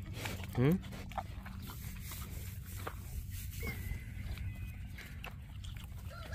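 Pig snuffling and chewing close by as it eats food off the dirt, a low steady rumble with a few soft clicks.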